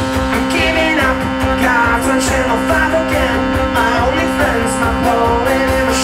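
Live rock band playing, guitar to the fore, with held notes ringing steadily under bending lead lines.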